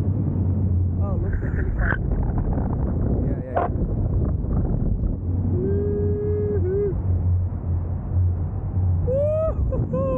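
Wind buffeting the microphone of a camera carried in flight under a paraglider: a loud, steady low rumble. A voice holds a note about halfway through and gives a couple of short cries near the end.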